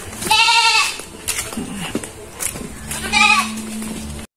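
Young goat bleating twice: a high call about half a second long near the start, and a shorter one about three seconds in.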